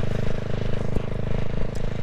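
A CCM Spitfire Six's 600cc single-cylinder engine running at a steady cruise through its baffled twin exhausts, picked up by a microphone inside the rider's helmet. A single short click comes about a second in.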